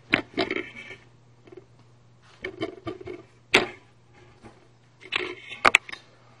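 A few scattered sharp clicks and knocks, the loudest about three and a half seconds in and a quick cluster near the end, over a faint steady low hum.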